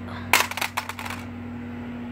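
Shoe crunching on loose pea gravel: a quick run of sharp clicks lasting about a second, over a steady low hum.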